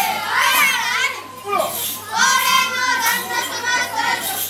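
Children's voices chanting or singing in high, wavering tones, in phrases with a short break about halfway through.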